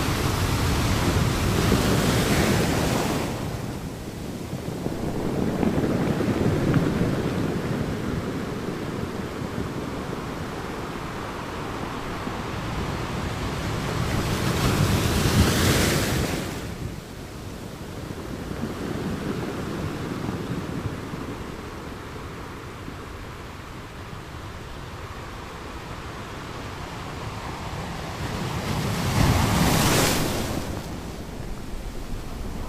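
Heavy ocean surf breaking on a beach: a steady wash of water, swelling into several loud crashing surges several seconds apart as big waves break.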